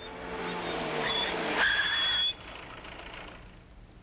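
A car driving up and slowing, its engine note falling, with a high brake squeal over the last moments before the sound cuts off a little over two seconds in. A fainter steady hum follows.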